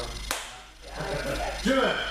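A single sharp smack a moment in, then a man's voice calling out near the end.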